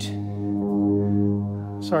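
Airplane flying overhead: a steady, low droning hum that swells slightly in the middle and eases off.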